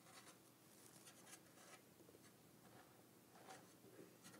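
Near silence: room tone with a few faint soft ticks and rustles.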